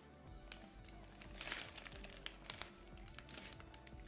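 Faint crinkling of a paper sleeve wrapped around a hotteok as it is handled and eaten, with a louder rustle about a second and a half in and a couple of sharp crinkles near the three-quarter mark, over quiet background music.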